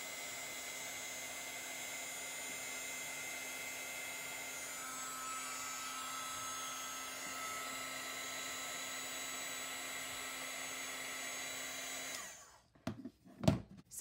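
American Crafts craft heat tool running with a steady fan whir and hum, then switched off abruptly about twelve seconds in. A few sharp clicks and knocks of handling follow near the end.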